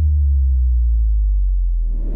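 Logo-intro sound effect: the tail of a deep bass boom, a loud low hum that sinks slightly in pitch and dies away near the end.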